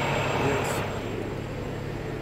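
Semi-truck's diesel engine idling, a steady low hum, with street noise coming through the open cab window that fades about a second in.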